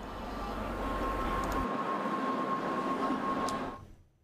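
Steady background hum and hiss of ambient location sound with a faint high whine, a single click about three and a half seconds in, fading out near the end.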